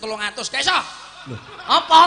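A man chuckling and laughing into a stage microphone, amid bits of speech, with a loud burst of laughter near the end.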